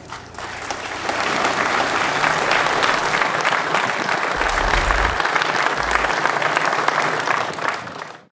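Outdoor crowd of several hundred people applauding at the end of a speech. The dense clapping swells within the first second and then holds steady.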